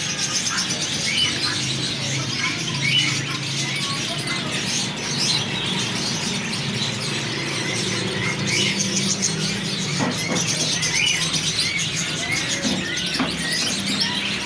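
A flock of caged budgerigars chattering, with quick overlapping chirps throughout. A low steady hum runs underneath, and a few knocks come about ten seconds in.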